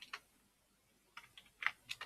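Keystrokes on a computer keyboard: a couple of keys at the start, then a quick run of about five keys about a second in.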